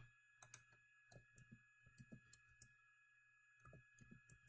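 Faint computer keyboard keystrokes: a dozen or so scattered clicks as a ticker symbol is typed in, pausing briefly before a last few near the end. A faint steady hum lies underneath.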